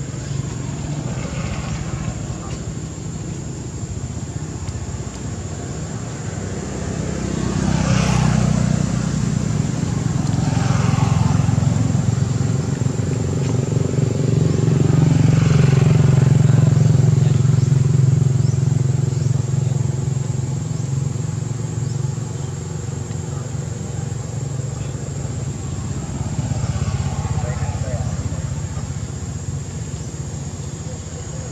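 A motor vehicle's engine running, a low hum that grows louder through the first half, is loudest about halfway through and then eases off, like a vehicle passing by.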